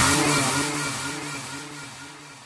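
The closing held note of an electronic dance track dying away: a low sustained tone, wavering slightly, that fades steadily toward silence after the last kick drum.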